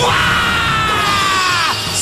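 A cartoon character's long, high-pitched battle cry, held and then dropping away about a second and a half in, over dramatic background music.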